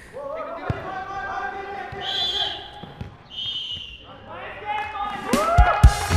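A football kicked and bouncing on artificial turf in a small-sided match, a few sharp knocks, with players' voices calling out. Near the end, loud hits and a rising whoosh of an edited music sting come in.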